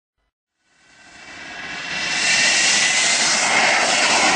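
A rushing, jet-like noise swells up from silence about a second in and then holds steady, with a faint steady whine in it: the sound-effect intro of a hip hop track before the beat drops.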